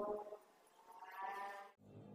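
Bleating animal calls: one fading out right at the start and a second, higher-pitched call about a second in.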